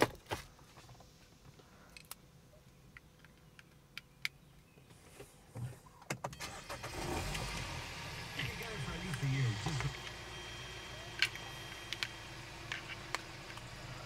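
Clicks of cables and connectors being handled. Then, about six seconds in, a car engine starts and settles into a steady idle, heard as a low hum inside the car's cabin.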